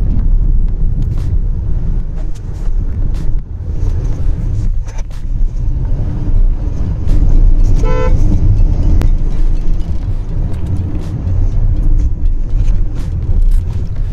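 Steady low rumble of road and engine noise inside the cabin of a Hyundai Creta being driven. A vehicle horn toots briefly about eight seconds in.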